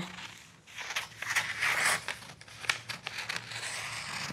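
Large shears cutting through brown kraft pattern paper, the paper crinkling and rustling with small snips, starting about a second in.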